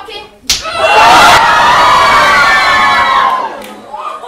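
A sharp slap-like hit about half a second in, then loud screaming that wavers in pitch for about three seconds and fades out.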